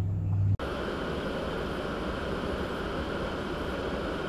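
Steady, even rumbling noise from inside a vehicle's cabin, picked up by its dashcam microphone, typical of the vehicle sitting with its engine running. It starts abruptly about half a second in, replacing a low steady hum.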